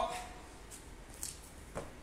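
A few faint rustles and one soft knock as a person lowers into a deep squat on a rubber gym floor: body and shoe movement during the exercise.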